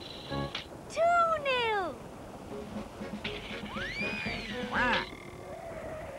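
Cartoon sound effects over background music: a loud, long falling whistle-like glide about a second in, then a rising-and-falling swoop near four seconds, followed by a short pitched blip.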